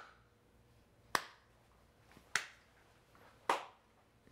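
One person slow-clapping: three single sharp hand claps, about a second and a quarter apart.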